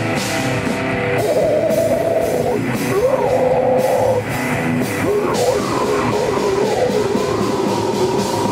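Heavy metal band playing live: electric guitars, bass and a drum kit in a loud, continuous passage, with a wavering pitched line riding over the top.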